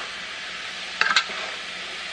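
Chopped vegetables sizzling as they sauté in a stainless steel pot, stirred with a wooden spoon, with a short knock of the spoon against the pot about a second in.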